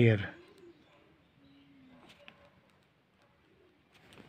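The tail of a man's spoken word in the first moment, then a quiet room with a faint, low cooing call about a second and a half in, typical of a dove.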